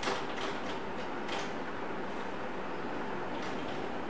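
Steady room hiss during a pause in speech, with a few faint, brief scratchy sounds.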